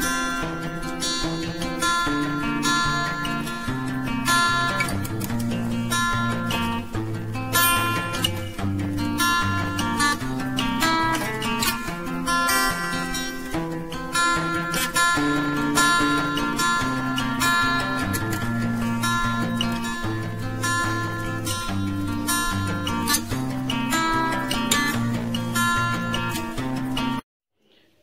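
Background music: an acoustic guitar instrumental, plucked and strummed, which cuts off suddenly near the end.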